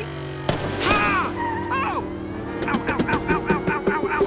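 Animated car-chase sound effects: a single loud bang, like a car's exhaust backfiring, about half a second in, then a pitched cry, then a rapid string of sharp pops near the end.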